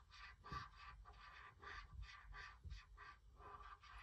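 Felt-tip marker colouring in on paper: faint, short scratching strokes, about four a second.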